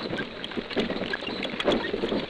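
Archival sound-effect recording of artillery caissons on the march: an irregular, continuous clatter and rattle, with the crackle of a worn 78 rpm disc over it.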